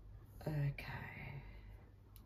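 Soft speech: a woman quietly says "okay", trailing off into a breathy whisper, over a steady low hum.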